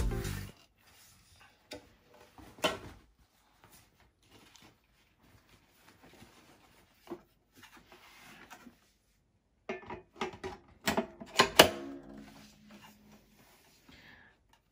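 Background music fading out in the first half-second, then scattered knocks and clicks of the hard plastic parts of a Graco Everyway Soother baby swing being handled and fitted together. The knocks are busiest and loudest from about ten to twelve seconds in.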